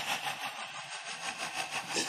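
A fast, even, rhythmic rasping noise that repeats steadily several times a second.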